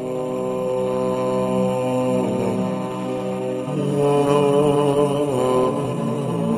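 Islamic devotional vocal chant in slow, long held notes. The line turns more ornamented and wavering about four seconds in.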